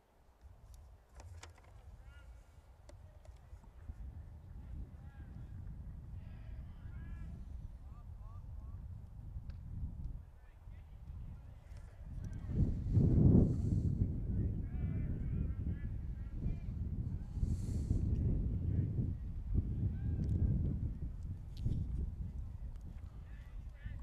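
Distant shouts and chatter from ballplayers and onlookers, over a low, uneven rumble that grows louder about halfway through.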